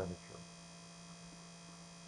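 Low, steady electrical mains hum with several faint, steady high tones above it. A spoken word trails off right at the start.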